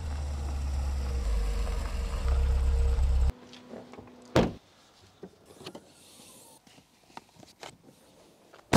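Low, steady rumble of a small hatchback car driving up and parking, cutting off abruptly about three seconds in. About a second later a car door shuts with one loud thump, followed by a few faint clicks.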